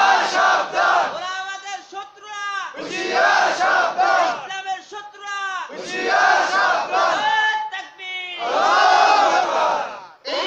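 Call-and-response chanting: a single man's voice sings a drawn-out line and a large crowd answers in loud unison, back and forth, with four crowd answers. The crowd's answers are the loudest parts.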